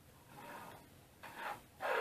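Steel guide rod being pushed through the Y-axis linear bearing blocks of a Genmitsu 3018Pro CNC router: three short rubbing slides, the last one loudest.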